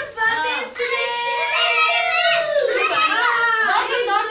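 Young children's voices, high-pitched and overlapping, talking and calling out over one another.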